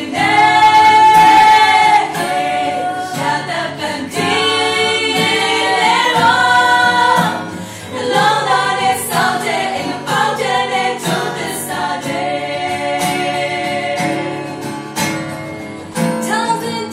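A small group of women singing a pop song in close harmony with long held notes, accompanied by acoustic guitar. The loudest part is a long held note in the first two seconds.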